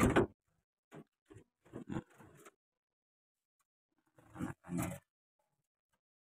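Irregular knocks and rustles of a wooden bird-breeding cage being handled and opened, the loudest one at the start, a cluster of softer ones after it and a pair of rustles near the end.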